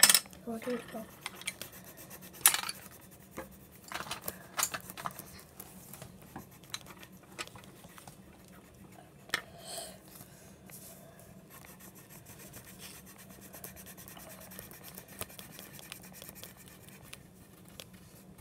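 Crayons clicking and tapping as they are picked through and set down on a table, with faint scratching of coloring on paper. The taps are scattered and come most often in the first few seconds.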